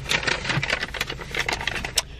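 Paper rustling and crackling in quick, irregular clicks as a sheet is handled inside a car, ending with one sharper click.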